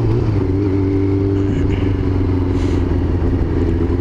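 Yamaha YZF-R6's inline-four engine running at steady cruising revs, its note dipping slightly just after the start and then holding steady.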